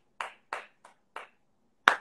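A few soft, breathy bursts of laughter, then hand clapping that starts near the end, about four claps a second.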